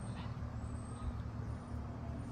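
A steady low rumbling hum, like a motor or engine running, with no distinct events.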